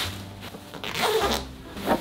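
Fabric bean bag cover rustling and swishing as it is tugged and dragged down over the bead-filled inner bag, in three short swishes, the longest about a second in.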